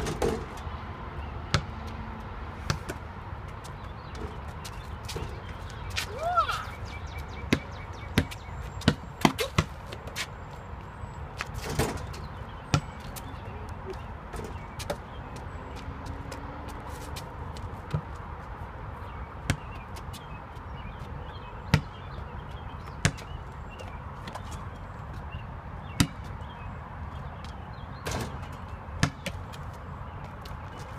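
Basketball bouncing on asphalt and striking a portable hoop's backboard and rim: sharp thuds at irregular intervals. Wind rumbles steadily on the microphone.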